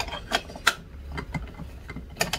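A few light, irregular clicks and rattles of a stainless steel grating drum being fitted into the plastic housing of a hand-crank rotary drum grater.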